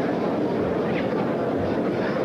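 Steady crowd noise from a boxing arena audience.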